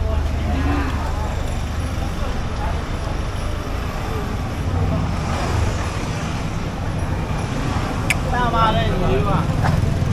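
Busy street ambience: a steady low traffic rumble with the chatter of passers-by, and a nearer voice near the end.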